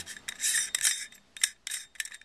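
ReadyCap lens-cap holder being screwed onto a metal adapter ring: short scraping rubs of the threads turning, with a few small clicks in the second half.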